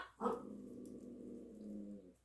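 A woman's drawn-out, steady hum of approval ("mmm"), held for nearly two seconds as she smells a fragrance mist.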